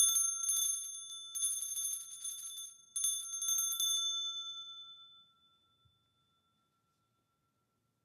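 Altar bells rung at the elevation of the chalice, shaken in several bursts over about four seconds. The clear ringing then fades away.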